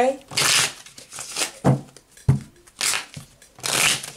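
A deck of tarot cards being shuffled by hand: several short swishing riffles of the cards, with a few soft knocks of the deck in between.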